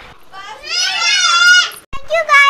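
A girl's high-pitched, drawn-out vocal squeal, wavering in pitch, lasting about a second and a half and cutting off abruptly just before the end.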